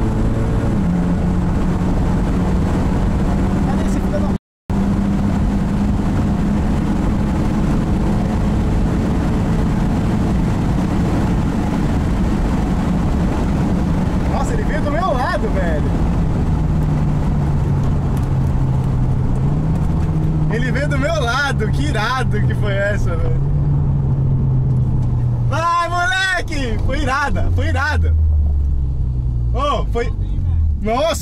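In-cabin sound of a Mitsubishi Lancer Evolution's turbocharged four-cylinder at speed on a drag run: a steady engine note with road and wind noise, its pitch sinking slowly in the second half as the car slows after the run. The sound cuts out briefly about four and a half seconds in, and voices come over it near the end.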